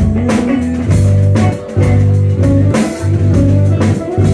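Live rock band playing an instrumental passage: electric guitar over bass guitar and a drum kit, with a steady beat.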